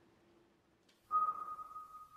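Faint low hum, then about halfway through a sudden steady high-pitched single tone that holds on, a film sound-design ringing effect.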